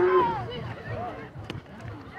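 Spectators shouting and calling out, with a long held shout dying away at the start and short calls after it. A single sharp click comes about one and a half seconds in.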